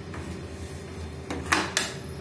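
Screwdriver working at the plastic bypass tray frame of a Kyocera laser printer: three sharp plastic clacks in quick succession, a little past a second in, the middle one loudest, over a steady low hum.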